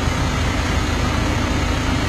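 Vehicle engines idling steadily, a constant low hum with no change in pitch.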